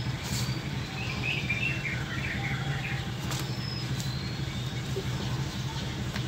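Birds chirping, mostly in a short burst about a second in, over a steady low mechanical hum like a nearby idling engine or traffic.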